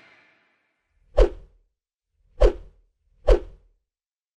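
Three short whoosh sound effects, each with a deep thud at its start, about a second apart, from a TV news station's animated logo end card as its elements pop in.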